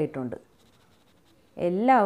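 Speech: a voice talking, broken by about a second of near silence in the middle.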